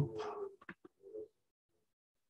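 A man's voice trailing off at the end of a phrase, then a few faint clicks and a brief low hum, before quiet.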